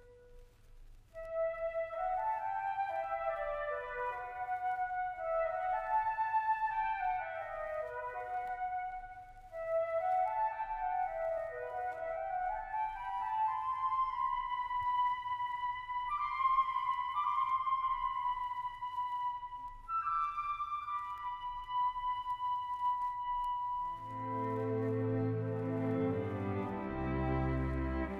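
Solo woodwind line in a chamber orchestra, playing winding runs that fall and rise, then holding a long high note. About two seconds before the end, the ensemble enters underneath with low sustained chords.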